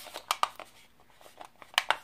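A series of short plastic clicks and taps from a toy quadcopter's plastic body being turned over and handled.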